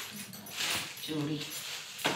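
Plastic bags and newspaper lining rustling as items are lifted out of a suitcase, with a short voice sound about a second in.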